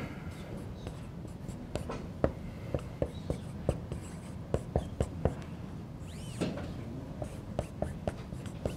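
A pen writing on a board surface, making a run of sharp, irregular taps and clicks, roughly two a second, over a steady low room hum.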